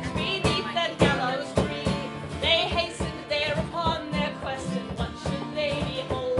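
A woman singing a narrative folk ballad live, accompanied by a strummed acoustic guitar with regular strokes.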